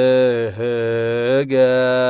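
Ethiopian Orthodox Lenten hymn (mezmur) chanted in long, held notes on a nearly level pitch, broken by two short dips between syllables.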